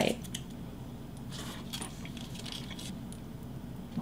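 Faint mouth sounds of a person biting into and chewing a soft brownie bite, with a few light clicks near the start, over a low steady room hum.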